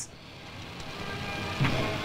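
Faint music fading in under a steady hiss that rises in level, with a new sound entering late on.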